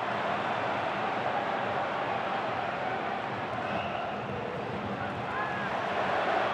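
Football stadium crowd: a steady hubbub of many voices.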